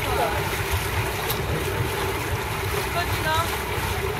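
Small river tour boat under way: its motor runs with a steady hum, and wind buffets the microphone with a fluttering low rumble.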